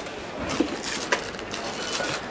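Plastic sweet packet crinkling and rustling as it is handled, a string of irregular crackles.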